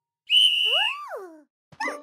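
A whistle blown once in a steady, shrill blast lasting under a second, followed by a swooping cartoon sound that rises and then falls in pitch.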